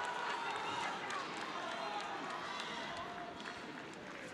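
Arena crowd noise: a steady murmur of many voices with scattered shouts from cageside, easing slightly toward the end.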